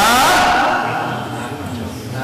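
A man's voice speaking Urdu into a microphone, with a drawn-out word at the start. It breaks off after under a second into a pause with only low, steady background noise.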